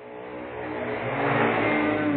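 A motor vehicle's engine running, swelling in level to a peak about a second and a half in, then easing off.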